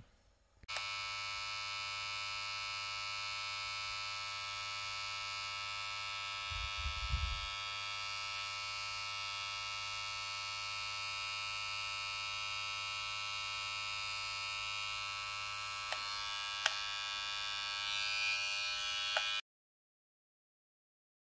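Kemei KM-1931 hair trimmer's motor and T-blade running with a steady buzz, at about 4,770 rpm. It starts about a second in and stops abruptly near the end, with a few short clicks shortly before.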